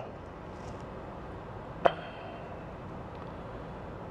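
Car idling with the heater running, heard from inside the cabin as a steady, fairly quiet hum. A single short, sharp sound about two seconds in.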